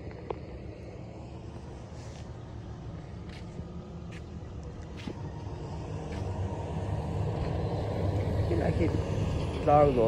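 A road vehicle's engine running, growing louder from about six seconds in as it approaches. A few faint clicks come earlier, and a voice is heard near the end.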